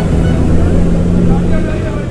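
A motor vehicle engine running with a steady low hum that fades slightly near the end, under faint crowd chatter.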